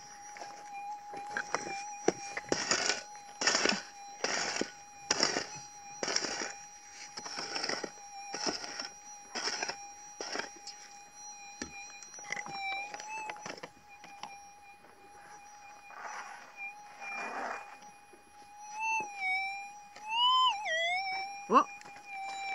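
Minelab SDC 2300 metal detector giving a steady threshold tone while a pick strikes into stony dirt about once a second, a dozen times. Near the end the detector's tone wavers and swoops up in pitch twice as the coil passes over the dug hole, still answering to a target in the ground.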